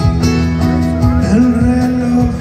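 Live band playing a slow ballad: acoustic guitar and electric bass over steady held tones.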